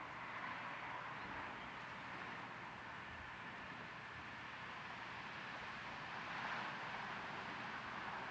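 Faint, steady outdoor background: an even hiss with no distinct sound standing out.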